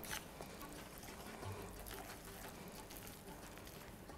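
Faint, soft sounds of a wooden spoon stirring wet batter in a ceramic mixing bowl.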